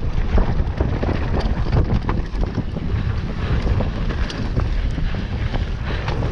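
Wind buffeting the camera microphone over the rumble of a mountain bike rolling fast down a dirt trail, with frequent small clicks and rattles from the bike and the ground.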